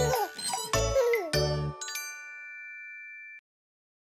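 Closing bars of a children's song with a beat, ending on a bright chime that rings out steadily for about a second and a half, then cuts off suddenly, leaving silence.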